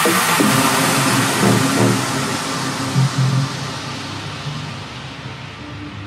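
Techno in a breakdown with no beat. A hissing noise sweep slowly fades and darkens over a low repeating synth line.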